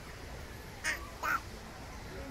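Two short, loud calls from a young Asian elephant, about half a second apart, as it resists being pushed toward the bath.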